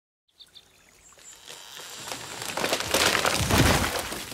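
A conifer cracking and splintering as it topples, growing steadily louder into a heavy crash of trunk and branches landing across a shallow river about three and a half seconds in. Two short high chirps come right at the start.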